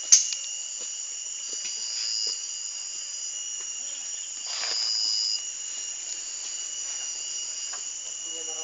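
Steady, high-pitched chorus of forest insects, with a louder, shrill whistling note about a second and a half in and another about four and a half seconds in, each lasting under a second. A sharp click comes right at the start.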